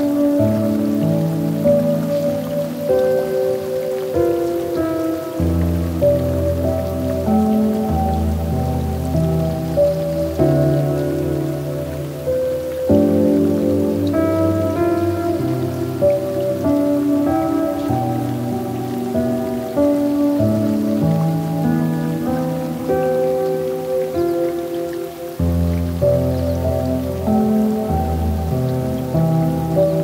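Slow, gentle piano music: held notes over low chords that change every few seconds, with a soft rain sound beneath.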